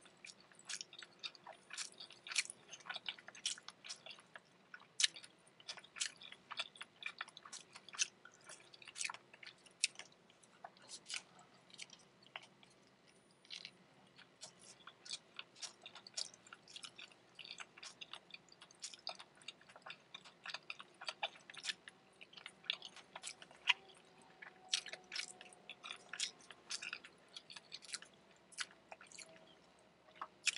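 Close-miked mouth chewing of a Taco Bell breakfast Crunchwrap (egg and hash brown in a tortilla), made up of many quick, irregular wet mouth clicks and smacks. There is a brief lull about halfway through.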